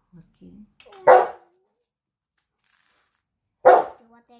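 A dog barks twice, two short loud barks about two and a half seconds apart.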